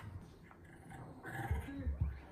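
A small dog growling in play, a rough "gau-gau" during a friendly tussle over a toy rather than a real fight, louder in the second half.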